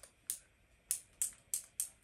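Claw hair clips clicking as they are handled and unclipped from their cardboard backing card: five short, sharp clicks at uneven spacing.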